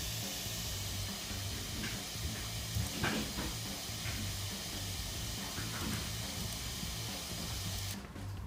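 Music from a phone played faintly through a small wired speaker driven by a TLV320AIC33 codec, under a steady hiss. The hiss is noise on the codec's output from its high-power output common pins being set to differential rather than single-ended, and it cuts out sharply at the very end.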